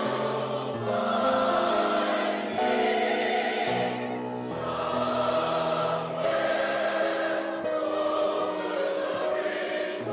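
A choir singing sustained chords over a low accompaniment, the harmony moving to a new chord every second or two.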